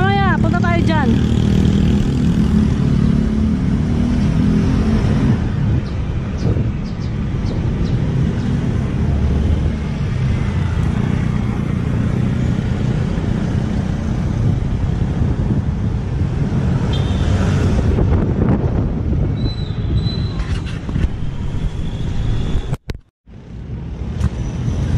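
Steady rumble of wind on the microphone and street traffic while riding through city traffic, with a few short gliding tones in the first second. The sound drops out abruptly for a moment near the end.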